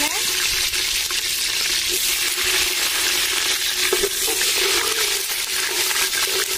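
Green chillies and whole spices sizzling steadily in hot oil in an aluminium pot, stirred with a metal ladle, with a single knock about four seconds in.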